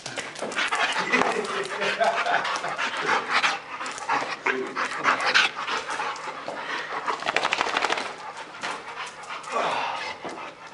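A young Boxer mix dog panting while running and playing.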